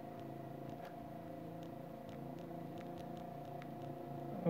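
Faint steady background hum made of a few level tones, with light scattered ticks of a stylus writing on a tablet screen.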